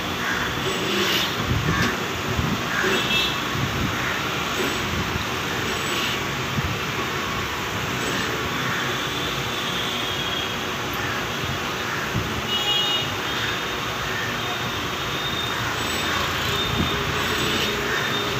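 Arihant vertical key-cutting machine's motor running steadily while a duplicate key is cut.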